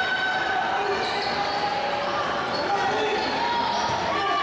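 Basketball dribbled on a hardwood gym floor, with voices from the crowd and players talking throughout.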